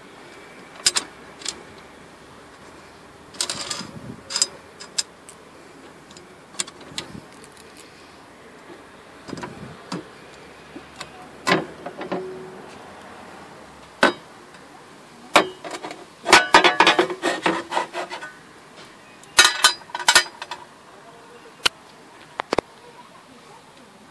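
Metal fuel-pump access cover in a car's floor pan being handled and lifted off: scattered clicks and knocks of metal on metal, with a longer run of clattering a little past the middle and a few sharp clicks near the end.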